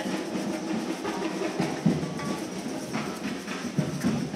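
A children's percussion group playing drums and hand percussion together, following a leader's gestures.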